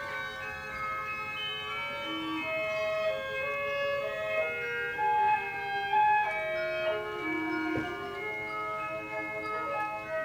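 Orchestral ballet music: several held notes overlap beneath a melody that moves in long, smooth notes.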